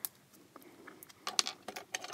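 Faint, scattered light clicks and clinks of small craft items being handled, with a quick cluster of them about a second and a half in.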